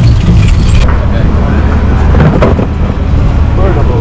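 Wind buffeting the camera microphone outdoors: a loud, steady low rumble.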